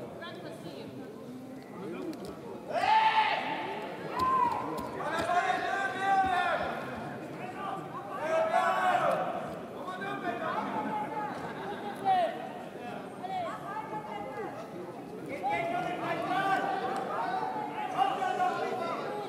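Voices shouting in short, high-pitched bursts every second or two, the loudest calls about three and nine seconds in.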